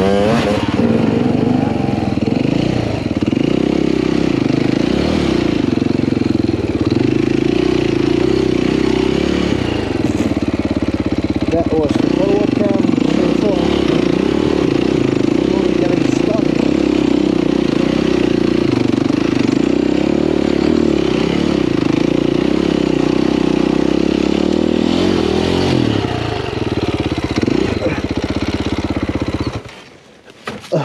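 Enduro dirt bike engine running close to the rider's camera, holding a fairly steady note with a few brief revs, then cutting out suddenly near the end.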